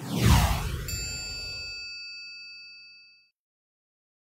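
Logo jingle sound effect: a deep whoosh sweeping downward, then about a second in a bright bell-like ding that rings out and fades away by about three seconds.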